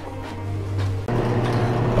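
A faint steady hum, then about a second in a wood lathe's motor takes over, running with a steady low hum.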